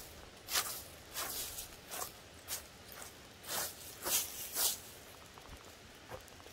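Dry leaf litter and pine needles crunching and rustling in about seven short bursts, as of steps or movement close to the microphone.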